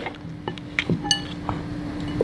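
A few light clinks and taps against a glass bowl as a lamb shank is dipped and turned in sauce, one of them ringing briefly. A faint steady hum runs underneath.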